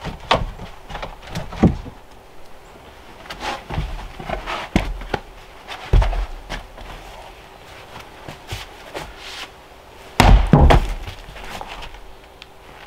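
Pieces of wood and lumber knocking and clattering as they are picked up and dropped onto a pile: a string of separate wooden knocks at irregular intervals, the loudest close together near the end.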